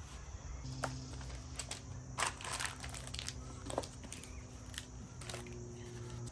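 Quiet handling sounds of raw ground beef and wax patty paper: scattered soft clicks, taps and paper crinkles as meat is lifted off a kitchen scale and a paper-backed patty is set on a tray, over a faint steady low hum.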